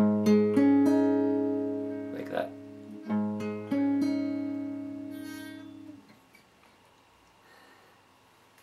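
Steel-string acoustic guitar: a chord picked string by string and left ringing, then a second chord picked the same way about three seconds in. The ringing fades away by about six seconds.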